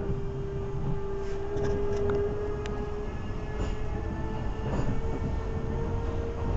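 Electric passenger train running, heard from inside a carriage: a low, steady rumble with a single whine that steps up in pitch about halfway through.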